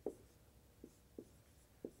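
About four faint taps of chalk on a blackboard as an equation is written, in a small room.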